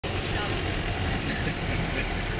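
Bus engine and cabin noise heard from inside a moving bus, a steady low hum, with passengers' voices faint in the background.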